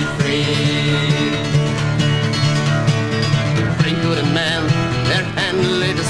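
Instrumental passage of a 1960s folk recording: acoustic guitar playing over a steady, held low chord, without singing.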